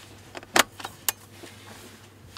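A Fujifilm XF18-135mm zoom lens being fitted to an X-mount camera body: several sharp metallic clicks of the bayonet mount seating and locking, the loudest about half a second in and another about a second in.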